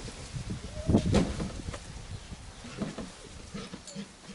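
Labrador Retriever puppy giving a few short whining yelps, the loudest about a second in and another near the end.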